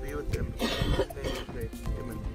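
A person coughing and clearing their throat, one harsh burst just over half a second in, over background voices.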